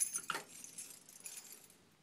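A door being pushed open with light metallic jingling, like a bunch of keys, and a soft knock about a third of a second in. The jingling fades out before the end.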